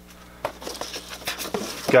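Rummaging in a cardboard box: packing material rustles, with a light knock about half a second in, as a metal pedal linkage rod is lifted out.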